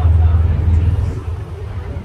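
Low, steady rumble of a moving open-sided shuttle tram, loudest in the first second and easing after, with faint passenger voices behind it.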